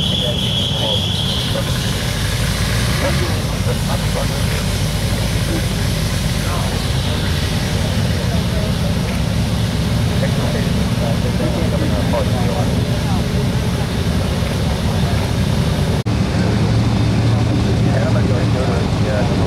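Republic Seabee amphibians' single pusher piston engines running as the planes taxi on the water, a steady low rumble, with scattered voices over it.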